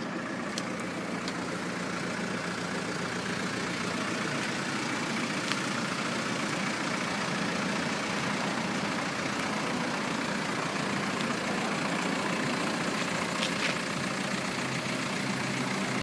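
Steady vehicle noise, a low rumble under a broad hiss, growing a little louder over the first few seconds, with a few faint clicks.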